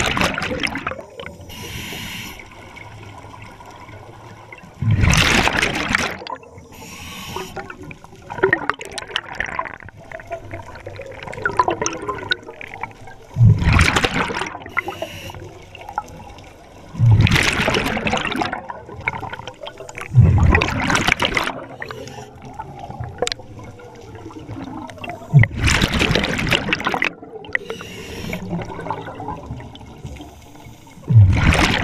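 Scuba diver breathing through a regulator underwater, heard close: about six loud bursts of exhaled bubbles a few seconds apart, with quieter gurgling between.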